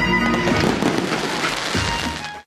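Fireworks crackling and popping in quick, dense succession, with music playing underneath.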